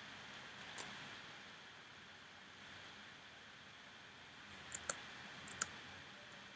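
A few sharp computer keyboard and mouse clicks over faint room hiss as a character is typed into a code editor: one about a second in, then a quick cluster of four near the end.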